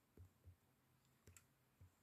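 Near silence with four faint, short, dull taps spread over two seconds, like fingertips tapping on the phone that is streaming.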